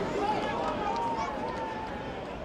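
A voice giving one long drawn-out shout at a football ground, over a steady murmur of crowd and pitch noise.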